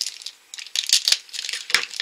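Thin plastic toy wrapper crinkling as it is handled, in irregular crackling bursts with a short pause just after the start and a sharp crack near the end.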